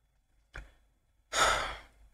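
A man sighing: a breathy exhale into the microphone about a second and a half in, after a short, faint breath sound about half a second in.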